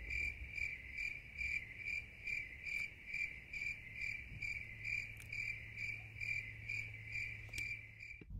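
Cricket chirping, laid in as a sound effect: a high, even chirp repeating about two and a half times a second that starts and stops abruptly.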